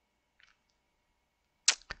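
Near silence in a pause of the narration, with a faint steady whine, a faint tick about half a second in, and a short sharp breath-like sound near the end as the voice starts again.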